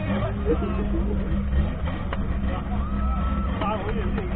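Race car engine running under load, heard from inside the cabin as a steady low drone, with occasional knocks and voices over it.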